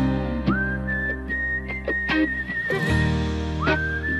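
Slow rock ballad with a whistled melody over guitar and bass. The whistle holds long, wavering notes and slides up into a new note about half a second in and again near the end.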